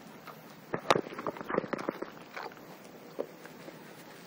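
Small white terrier rooting about on artificial turf and picking up a toy in its mouth: a quick run of clicks and scuffs starting about a second in, the first one the loudest.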